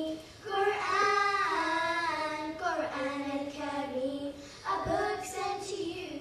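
A group of schoolchildren singing a nasheed together without instruments, in phrases of held, wavering notes with short breaths between them.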